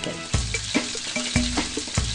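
Background music with a bass note about once a second, over chicken pieces sizzling as they sear in a frying pan.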